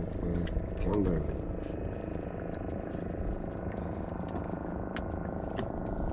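Steady low hum of a boat engine running, with a short burst of a man's voice about a second in and a few light clicks and knocks.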